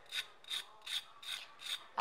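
A metal fork scraping back and forth across the crisp fried crust of a green-pea patty, showing how crispy it is. There are about five short rasping strokes, roughly two and a half a second.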